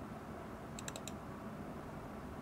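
A computer mouse clicking: a quick cluster of three or four sharp clicks a little under a second in, as a folder is opened and a program file selected.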